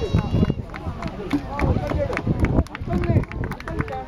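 People talking in the background, several voices, over a low rumbling noise. A brief high whistle-like tone sounds at the very start.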